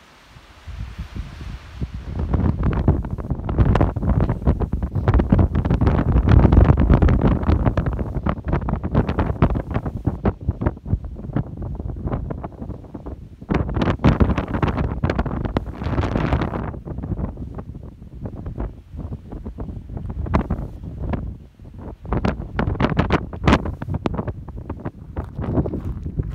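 Strong wind buffeting the microphone in gusts, starting about a second in, easing off briefly in the second half and then gusting again.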